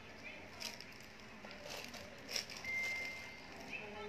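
Faint background voices with a few soft clicks or knocks, and one short steady high-pitched tone a little past the middle.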